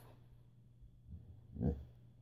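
A begging border collie gives one short, pitched vocal grumble near the end, shaped like the word "yeah", in answer to being asked whether it wants its dinner.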